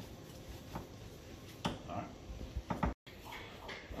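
Gloved hands squishing ground turkey and ground beef together in a glass bowl, faint, with a few light knocks.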